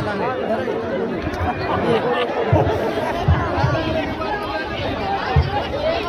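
A crowd of people talking over one another, with a few dull low thumps in the second half.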